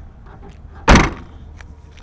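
The trunk lid of a 2002 Ford Focus ZTS sedan slammed shut: one loud, sharp thud about a second in.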